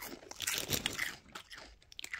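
A person biting and chewing crispy fried fish batter, a quick run of crunches in the first second and a half.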